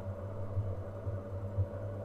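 Steady low electrical hum of background noise, with no distinct taps from the wooden pieces.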